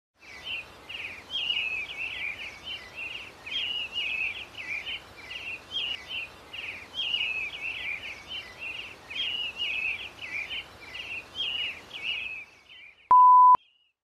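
Birdsong: a short chirping phrase repeated over and over above a faint steady hiss. Near the end it stops, and a single loud beep at one steady pitch sounds for about half a second.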